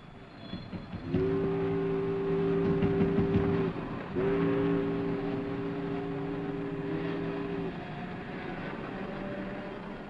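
A deep multi-note horn sounds two long blasts of about three seconds each, half a second apart, each starting and stopping cleanly, over a steady background hum.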